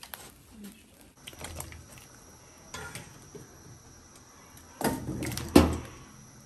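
Cookware and utensils being handled, with light clinks and knocks and then a louder knock and clatter about five seconds in.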